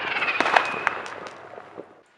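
Fireworks crackling with a rapid run of sharp pops that fades away toward the end.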